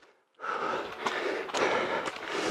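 A runner's hard breathing and footfalls on a muddy trail, picked up by a body-worn camera's microphone along with noise from its movement. The sound cuts in suddenly about half a second in, after a brief silence.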